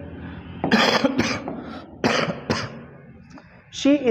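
A man coughing and clearing his throat: a few short rough bursts about a second in and again a little after two seconds.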